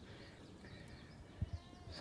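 Quiet outdoor ambience with faint, short high calls and a single soft knock about a second and a half in.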